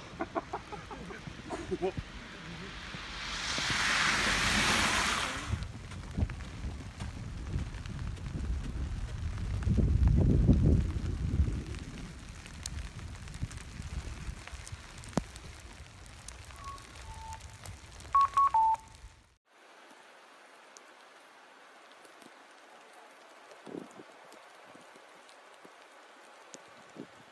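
Outdoor noise in a snow-covered street. A rushing swell of noise comes first, then a low rumble, then a few short electronic beeps at two alternating pitches. A quieter stretch of faint ambience follows.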